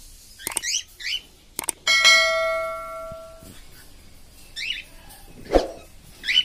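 Cockatiels giving short chirping calls a few times. About two seconds in, a click and then a notification-bell ding from a subscribe-button overlay, which rings out for about a second and a half and is the loudest sound.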